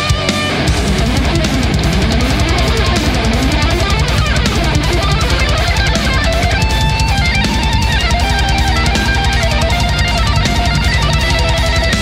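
Death metal instrumental passage with no vocals: distorted electric guitars playing a lead line of notes that slide up and down over bass and drums.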